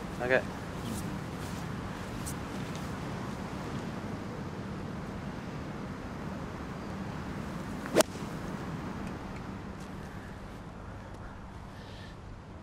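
A nine-iron striking a golf ball off the tee: one sharp crack about eight seconds in, over steady low outdoor background noise.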